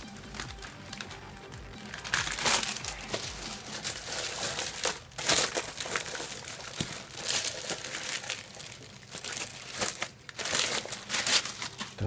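Clear plastic wrapping crinkling and rustling off and on as it is pulled off a metal-cased bench power supply.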